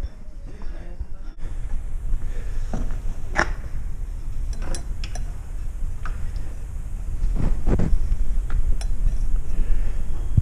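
A metal desk lamp with a chrome shade being picked up from among shop wares: scattered light clinks and knocks of metal and glass objects, over a low handling rumble. The strongest knocks come about three and a half and seven and a half seconds in.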